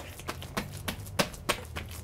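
Hands punching down risen, sticky bread dough on a countertop to press the air out of it. It makes an irregular run of soft slaps and taps, several a second.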